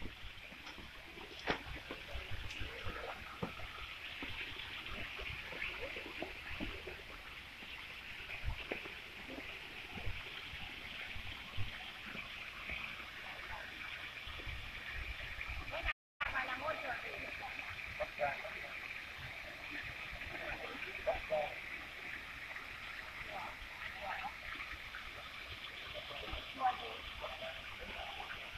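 Garden pond fountains splashing steadily, with a dense high chirping of birds over it. The sound cuts out for a moment about two-thirds of the way through.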